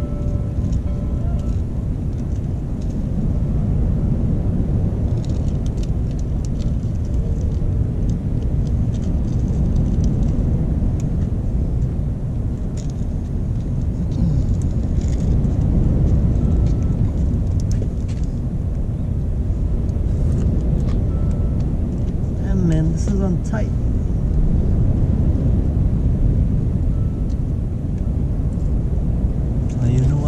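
Steady low outdoor rumble with a rough, fluctuating texture. A brief wavering, voice-like sound comes a little past twenty seconds in.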